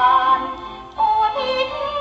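A female singer sings a Thai song in waltz time over instrumental accompaniment. She holds a long note that fades, then starts a new phrase about a second in.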